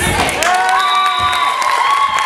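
A group of young voices shouting together in one long held cry, with a thump at the very start.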